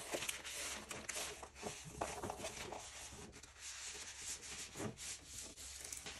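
A hand rubbing and smoothing clear adhesive shelf paper down onto paper while its backing is peeled back: a faint, irregular papery rubbing and scraping.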